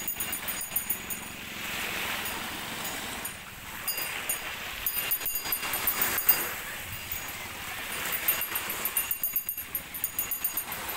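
Small waves washing in at the shoreline, swelling and falling every few seconds, with a scattered crackle of sharp clicks through the wash.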